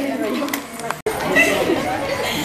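Several people talking at once in overlapping chatter. The sound breaks off for an instant about a second in, then the chatter resumes.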